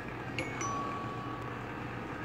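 Faint electronic tones from computer speakers playing a logo animation: a couple of brief high blips about half a second in, then a thin steady tone held for over a second.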